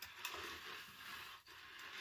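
Faint rustling and scraping as a thin craft wire is worked into the slot of a plastic Bowdabra bow-making tool, with a short break about one and a half seconds in.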